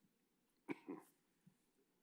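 Near silence in a quiet room, broken once about two-thirds of a second in by a short cough.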